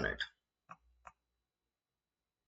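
The tail of a spoken word, then two short computer mouse clicks about a third of a second apart, roughly a second in.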